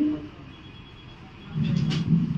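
A pause in speech into a bank of table microphones: a word ends, then faint room noise. A low rumble comes up near the end.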